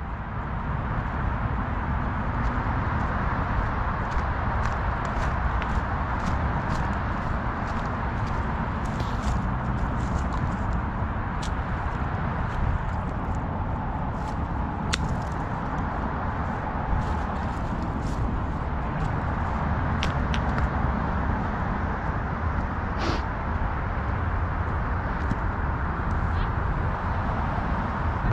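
Steady rushing noise of wind on a head-mounted camera's microphone, with scattered light clicks and rustles from walking across grass strewn with dry leaves.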